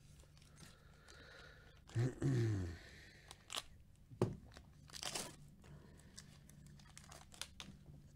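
A foil trading-card pack torn open by gloved hands, with a loud rip about two seconds in. The wrapper crinkles after it, and there is a single knock around four seconds as the cards are handled.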